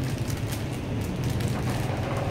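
A steady low hum, with faint light clicks as a plastic crankbait lure is handled.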